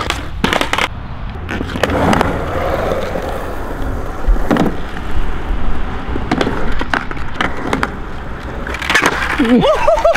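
Skateboard on wet concrete: wheels rolling, broken by repeated sharp slaps and clacks as the deck and wheels hit the ground in kickflip attempts. A voice is heard near the end.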